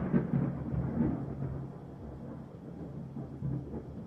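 Low rumbling tail of an outro logo-sting sound effect, a deep boom-like musical hit dying away and fading out.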